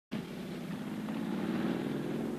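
A motor vehicle engine running steadily with a low, even hum.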